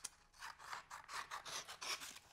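Scissors snipping through a glossy catalog page in a rapid series of short, crisp cuts.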